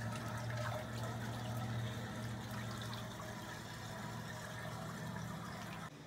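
Water churning steadily in a heated rooftop pool, over a steady low hum.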